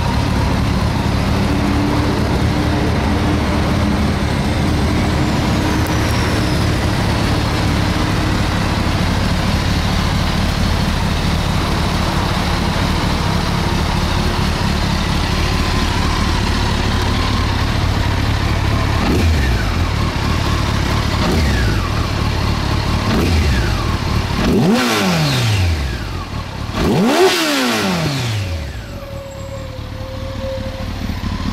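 Honda CBR1100XX Super Blackbird's inline-four engine idling steadily, then revved in a series of short throttle blips in the last ten seconds, the last two the strongest, before settling back to idle.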